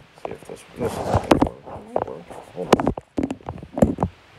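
Handling noise: a string of sharp clicks, knocks and rustles as the phone is moved and the chip packaging is handled, with the two loudest knocks near the end.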